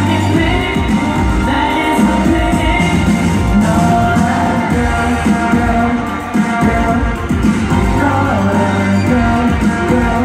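Live K-pop concert heard from the audience: a boy group singing over loud, amplified pop backing music through the arena sound system.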